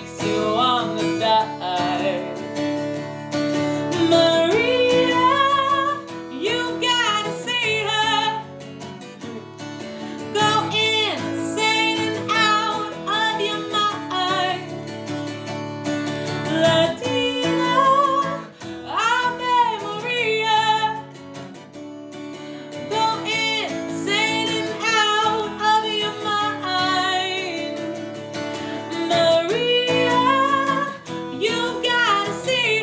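A woman sings over a strummed acoustic guitar, a steady duo performance with short breaths between the vocal phrases.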